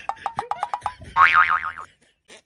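Cartoon-style comedy sound effect: a quick run of short ticks, then a loud wobbling boing whose pitch swings up and down before it cuts off.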